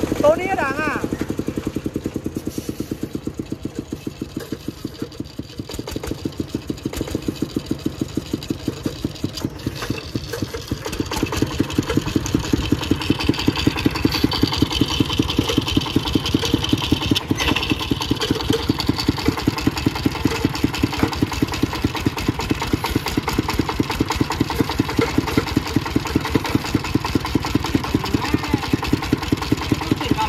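Single-cylinder diesel engine of a công nông farm cart chugging with a steady, even beat under load as it tows a loaded dump truck on a cable. It gets louder about ten seconds in and keeps working hard from then on.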